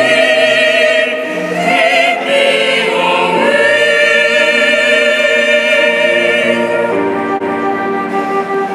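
Mixed choir of young female and male voices singing slow, sustained chords with vibrato, the harmony shifting to a new chord about every two to three seconds.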